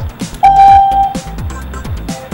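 Electronic background music with a steady kick-drum beat, and a loud held electronic tone about half a second in lasting under a second.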